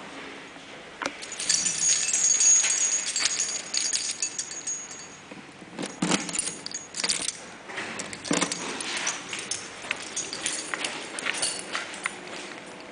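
A bunch of keys jangling while a key is put into the elevator's key-operated landing call switch, followed by several sharp metallic clicks about halfway through as the key goes in and is turned.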